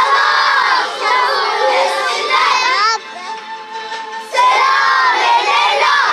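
A group of children singing loudly together, two sung phrases with a short break about three seconds in.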